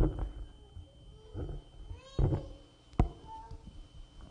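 A few short, meow-like cries, the second louder and rising in pitch, between two sharp knocks, one at the start and one about three seconds in.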